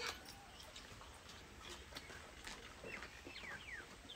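Faint birds chirping, with a few short falling chirps in the last second, over a quiet background with small faint clicks.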